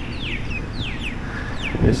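A bird calling: a series of short, high notes, each falling in pitch, about three a second, over a steady low rumble of wind or road noise.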